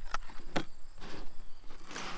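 Two light clicks about half a second apart as plastic blister-pack lure cards are handled and set down on a table. Crickets chirp faintly and steadily in the background.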